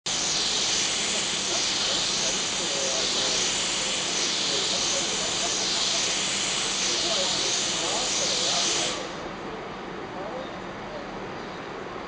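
Steam hissing loudly and steadily from the GWR Castle-class steam locomotive 5043 Earl of Mount Edgcumbe, with a slight pulse, then cutting off suddenly about nine seconds in. Underneath is a lower rumble of the train approaching through the tunnel.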